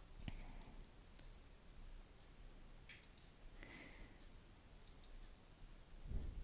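Near silence with faint, scattered clicks of a computer mouse, some of them in quick pairs.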